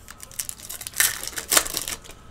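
A foil wrapper of a trading-card pack being torn open and crinkled by hand. It comes as a run of crackling rips, loudest about a second in and again half a second later.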